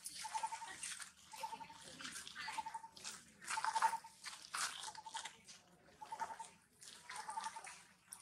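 Long-tailed macaque chewing food, with irregular crackling crunches. A short trilled note repeats about once a second in the background.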